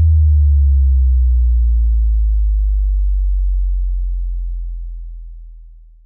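A deep synthesized bass tone, an electronic sub-bass drop, sliding slowly down in pitch and fading out over about six seconds.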